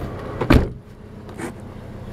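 A single thud in the car's cabin about half a second in, then the car's engine running quietly and steadily.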